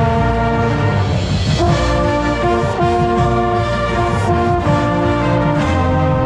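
Marching band brass section playing loud held chords, with trombone close and prominent, over a steady drum beat. The chords break off briefly about a second in, then resume.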